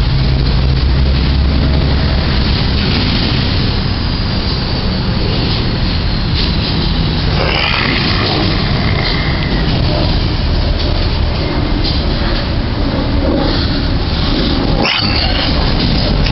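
Loud, steady rushing noise of wind buffeting the camera microphone, with a man's scream about halfway through and a knock near the end.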